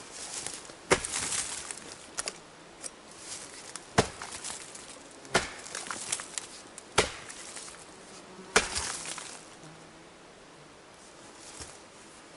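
An axe chopping into a rotten log: about six hard strikes, roughly one and a half seconds apart, each followed by splintering and crackling as the soft wood breaks away. The chopping stops about three seconds before the end.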